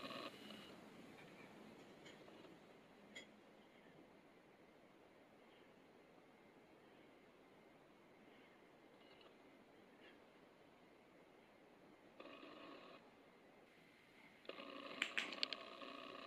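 Near silence: faint room tone, with a soft click about three seconds in and a few faint clicks near the end.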